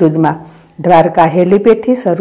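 Speech only: a voice narrating, with a short pause about half a second in.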